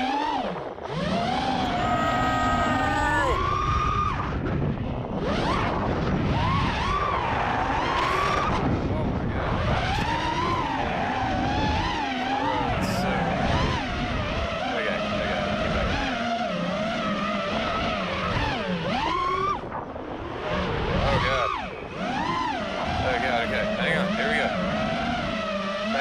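FPV freestyle quadcopter's brushless motors and propellers (Ethix Steele V2 motors, HQ Ethix S3 props) whining in flight. The pitch rises and falls constantly with the throttle, dipping briefly a couple of times about three quarters of the way through.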